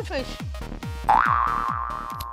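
Game-show sound effects: a quick run of short falling 'boing' tones, about three a second. About a second in, a long held electronic tone comes in, rises briefly, then holds steady and fades.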